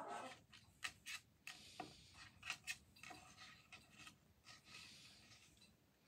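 Faint scratching and scattered sharp clicks of a cockatoo's claws and beak on a wooden tabletop.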